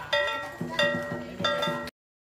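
Vietnamese lion-dance percussion: ringing metal strikes, like a small gong or cymbals, about every two-thirds of a second, with lower-pitched beats joining about half a second in. It cuts off suddenly near the end.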